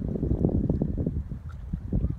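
Wind buffeting the microphone in an irregular low rumble, with the river's small waves washing at the edge of the stony shore.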